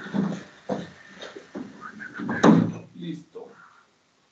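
A voice talking indistinctly, with a few short knocks and clatter mixed in; the sound stops shortly before the end.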